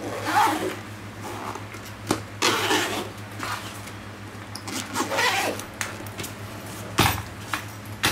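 A fabric-and-vinyl travel bag being handled and turned over: several short swishes of cloth and zips, with the small metal zip pulls and fittings clinking. Sharp knocks about two seconds in and near the end as the bag is set down on the wooden floor.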